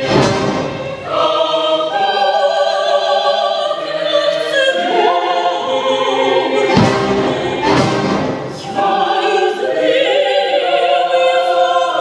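A female opera singer singing long held notes with strong vibrato, accompanied by a symphony orchestra.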